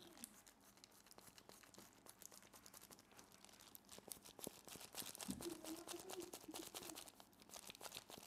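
Near silence with faint crinkling of loose disposable plastic gloves and small clicks as marker pens are handled.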